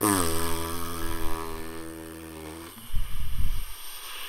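A man's low, drawn-out closed-mouth hum or groan ("mmm"), fading away over a little under three seconds. Short rustling and breathy noises follow.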